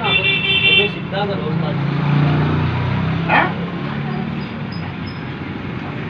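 Road traffic background: a short high horn toot at the start, then a vehicle engine's low hum that swells and fades over the next few seconds, with brief voices.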